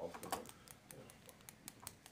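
Typing on a computer keyboard: a quick, irregular run of about a dozen light clicks.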